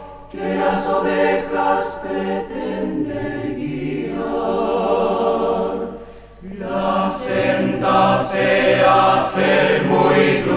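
Polyphonic choir singing together in harmony. The voices drop away briefly about six seconds in, then come back.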